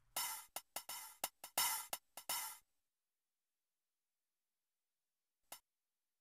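A drum kit played in a short, quick beat of about ten drum and cymbal hits, stopping after about two and a half seconds. One faint tick follows near the end.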